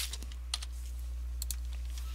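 A few separate computer keyboard keystrokes, with a close pair of them near the end, over a steady low electrical hum.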